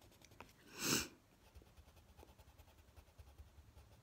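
A short burst of breath close to the microphone about a second in, then faint scratching of a coloured pencil on paper.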